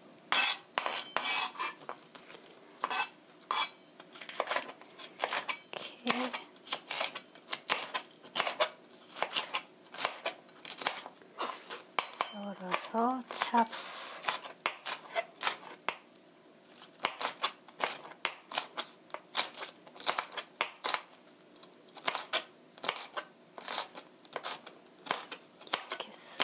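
Kitchen knife chopping a green bell pepper on a plastic cutting board: quick, irregular knocks of the blade striking the board, in runs with short pauses between them.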